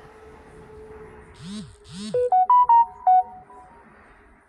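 A short electronic jingle, ringtone-like: two quick swooshes, then a run of about six short bright synth notes stepping up and down, over a faint steady hum.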